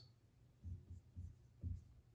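Dry-erase marker writing on a whiteboard: about five short, faint pen strokes.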